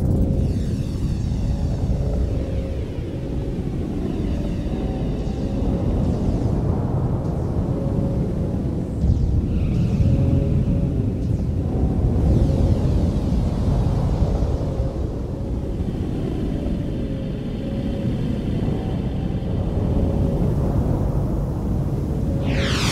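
Synthesized film score: a dense, deep rumble with faint sweeping tones above it, starting abruptly from silence.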